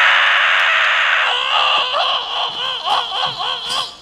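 A man screaming loudly, a long held scream that about a second in breaks into a wavering, warbling wail rising and falling about three times a second.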